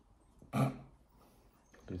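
A short, sharp throaty vocal noise from a person who has just sipped a drink, about half a second in; speech begins near the end.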